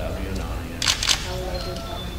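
Two sharp clicks in quick succession about a second in, a quarter second apart, over low voices.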